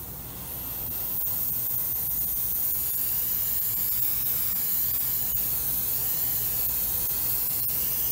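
Neo for Iwata TRN1 trigger-action airbrush spraying paint: a steady hiss of air that builds over the first second and then holds.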